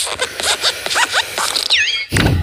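Cartoon sound effects of an animated desk lamp hopping: a rapid run of scratchy creaks from its spring joints, with short rising squeaks in the middle and a falling squeak near the end.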